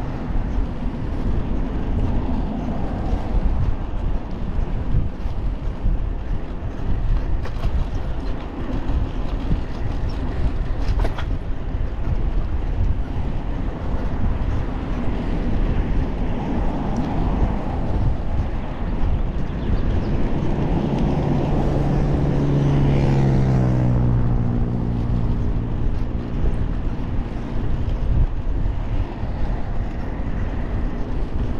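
Steady highway traffic noise with a low rumble. About two-thirds of the way through, one passing vehicle's engine note rises out of the traffic and falls in pitch as it goes by.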